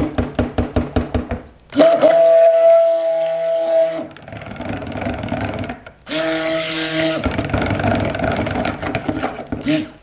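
Stick blender pulsed in soap batter in a plastic pitcher: two bursts of a steady whine about two seconds each, the first about two seconds in and the second about six seconds in, mixing the batter toward trace. A quick run of taps comes before the first burst.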